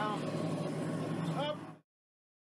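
Outdoor background with a steady low hum and faint, distant voices calling, which cut off abruptly to silence near the end.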